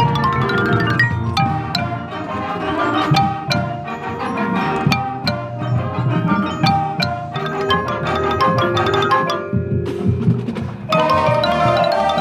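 Close-miked xylophone played with mallets in quick runs of struck, ringing notes over a full marching band and front ensemble. The mallet notes drop out briefly about ten seconds in, then return with the full band near the end.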